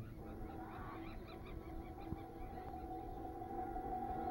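An animal giving a quick run of short, honking calls over a steady, low held tone.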